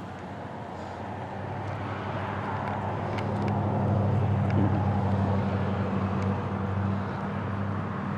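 A motor vehicle's engine runs with a low, steady hum. It grows louder over the first few seconds, holds, then eases off near the end.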